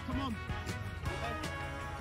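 Background music playing, with brief faint voices near the start.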